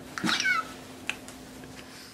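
A short, high-pitched vocal call that falls in pitch, followed about a second later by a faint click.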